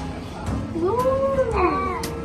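A drawn-out, meow-like whining call that rises and then falls in pitch over about a second, with a second short call overlapping it near the end.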